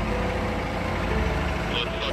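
Diesel engine of a telehandler idling with a steady low rumble, under background music with held notes.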